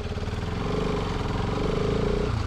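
Motorcycle engine running steadily as the bike rides off, its level rising slightly in the first moments.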